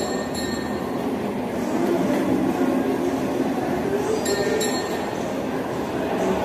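Steady hubbub of a busy shopping mall, with a few light, ringing clinks like tableware, near the start and twice about four seconds in.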